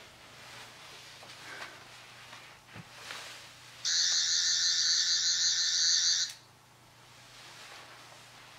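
Electronic buzzing sound effect of a small handheld gadget being fired, starting about four seconds in, lasting about two and a half seconds and then cutting off sharply.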